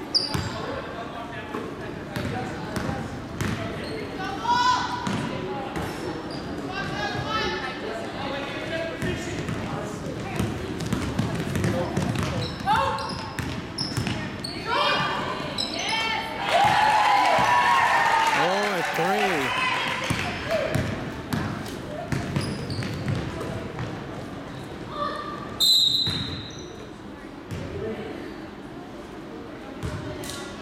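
Basketball bouncing and sharp knocks on a hardwood gym floor during play, with players' and spectators' voices echoing in the hall. A short, high whistle blast comes near the end.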